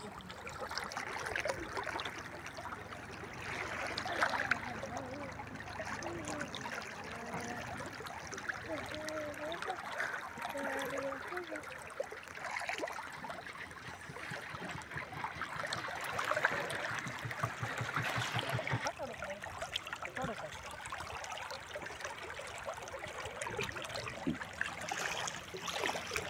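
Steady moving and trickling of shallow river water, with faint voices now and then.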